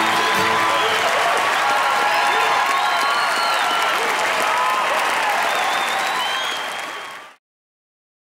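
A large audience applauding and cheering, with shouts and whistles, as the string band's last note dies away in the first half second. The applause fades out and stops about seven seconds in.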